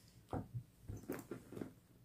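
Faint handling sounds of a handbag and its contents on a tabletop: a quick string of soft taps and rustles as hands set an item down and reach into the bag.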